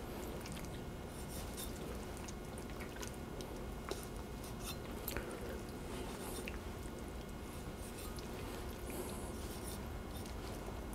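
Knife cutting meat from a raw goose carcass and hands moving the carcass on a wooden cutting board: faint wet sounds of flesh with a few small sharp clicks, over a low steady hum.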